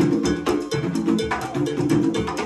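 Hand-played conga drums in a fast, dense interlocking rhythm, with a cowbell and timbales.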